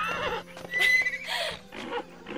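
A cartoon baby unicorn's voiced calls: a few short, high whinnies and squeaks, one with a brief high held note about a second in.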